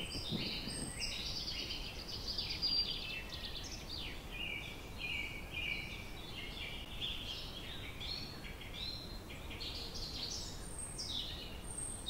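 Birds chirping and calling without a break: many short, high, overlapping notes and trills, over a low background hiss.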